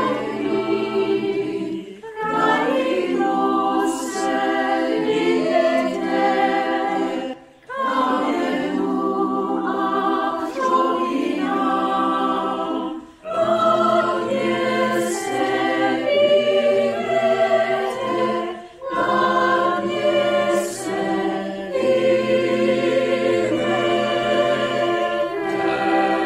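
Choir of many mixed men's and women's voices singing a Czech song in long phrases, with short breaks between phrases.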